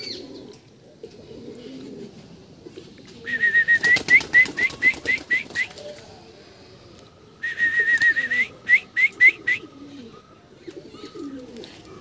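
Pigeons cooing low in the background, with two loud bursts of a high bird call about three and seven seconds in. Each burst is a held note that breaks into a run of six or seven quick rising chirps.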